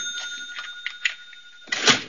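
Edited-in sound effect: a high ringing tone that slowly fades, with a few faint ticks, then a short bright burst near the end.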